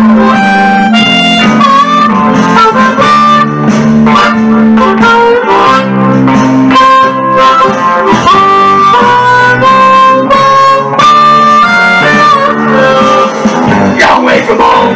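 Blues harmonica, cupped with a microphone, playing a Chicago blues riff with bent notes over a backing track with guitar.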